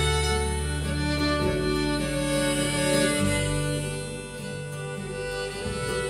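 Live acoustic string band playing an instrumental passage: a fiddle carries long held notes over acoustic guitar, mandolin and an upright bass holding long low notes.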